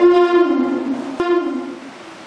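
Devotional singing: a solo voice holds a long, wavering note that slides down in pitch and fades out near the end, with a short click about a second in.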